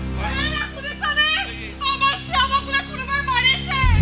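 High-pitched voices on a theatre stage, their pitch sliding and breaking in short phrases, over background music with steady low notes; a loud low boom swells in just before the end.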